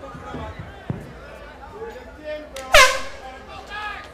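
A short, loud air-horn blast about three-quarters of the way through, signalling the start of the round, over faint crowd chatter.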